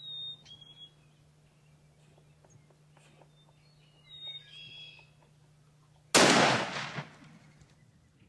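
A single shotgun shot at a Merriam's turkey gobbler about six seconds in, loud and sudden, dying away over about a second. Before it, two short high-pitched calls.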